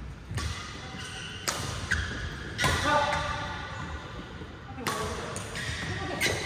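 Badminton rackets striking a shuttlecock in a rally: four sharp hits spaced one to two seconds apart, each ringing on in the echo of a large hall.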